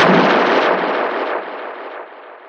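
An explosion-like crash as the electronic music cuts off, its noisy rumble fading away over about three seconds.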